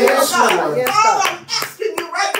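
A woman's voice speaking into a microphone, with a few sharp, short knocks among the words.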